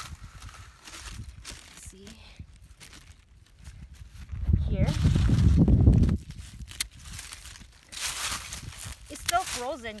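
Dry dead strawberry leaves rustling and crinkling as they are handled and gathered, with scattered small clicks. A loud low rumble lasts about two seconds midway, and a burst of rustling comes near the end.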